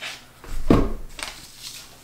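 A hot glue gun set down on a paper-covered work table with a single dull thump, followed by a few faint light handling rustles.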